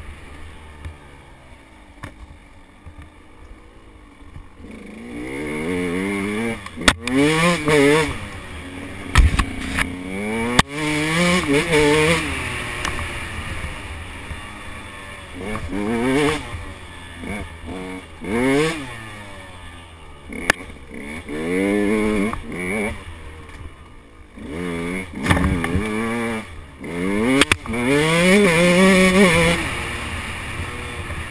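125 cc two-stroke dirt bike engine, heard from on board, revving up and easing off again and again under the throttle after a quieter first few seconds. A few sharp knocks cut in along the way.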